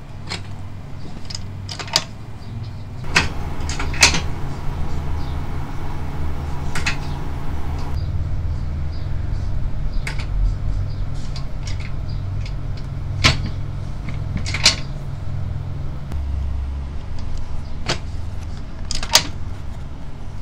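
Foot-operated kick press, converted to a punch press, clunking down as its hole punch goes through boot leather onto a brass block. There are about eight strokes, a few seconds apart, over a steady low hum.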